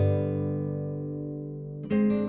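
Relaxing background music on guitar: a chord rings out and slowly fades, and a new chord is struck near the end.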